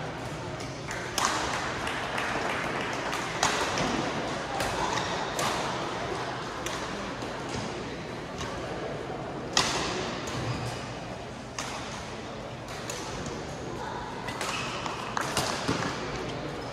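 Badminton rackets striking shuttlecocks, sharp cracks at irregular intervals from this court and neighbouring ones, over the chatter and echo of a busy sports hall.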